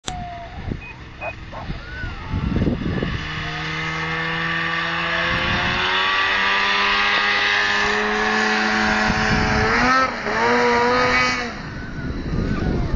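Ski-Doo Summit 800R two-stroke snowmobile engine running under throttle. It grows louder about three seconds in and climbs slowly in pitch, then revs up and down quickly near the end.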